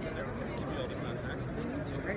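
Indistinct background chatter of several voices over a steady low room rumble.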